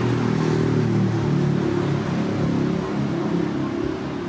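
Street traffic: a motor vehicle's engine running close by, a steady low rumble that eases off a little near the end.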